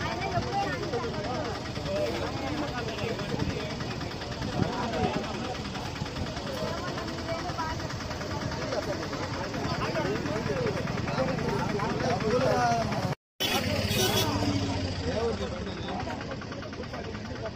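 Indistinct voices of people talking over the steady hum of a running vehicle engine, cut off for a moment about 13 seconds in.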